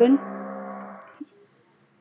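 A woman's drawn-out hesitation sound, one level held vowel of about a second that fades away.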